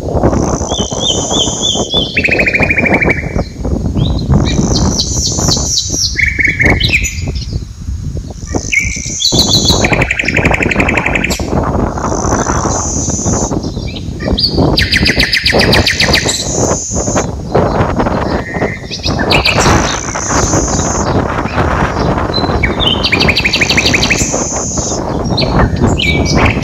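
Songbirds singing throughout in short, repeated high-pitched phrases and trills. A steady rushing noise runs underneath.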